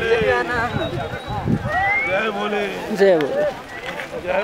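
People's voices talking and calling out, with some long held and gliding calls.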